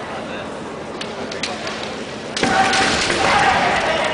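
Kendo fencers' bamboo shinai give a couple of light clacks, then a sharp strike about two and a half seconds in, followed by loud kiai shouting.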